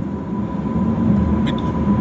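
Steady low road and engine noise inside the cabin of a moving car, with a faint steady whine above it.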